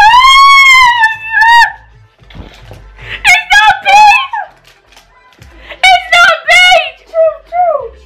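Women screaming and squealing in disgust at a foul-tasting jelly bean: a long, high, wavering scream at the start, then further high cries about three seconds in and again near the end.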